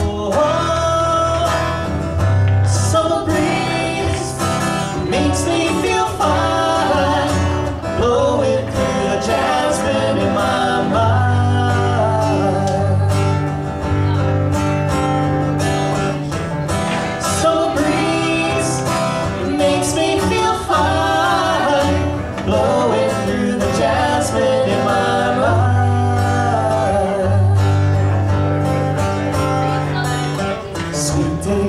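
Live acoustic guitar accompanying singing voices.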